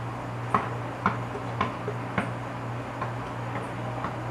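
Basketball being dribbled: about six bounces, roughly two a second, the last two fainter. A steady low hum runs underneath.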